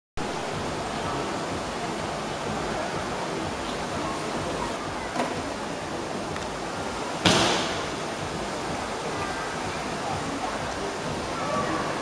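Steady hiss-like noise of a large performance hall with faint voices under it, broken by one loud, sharp impact about seven seconds in that rings out briefly, and a smaller knock a couple of seconds earlier.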